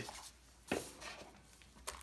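Two brief rubbing scuffs about a second apart, as gloved hands handle a cardboard box and its foam insert.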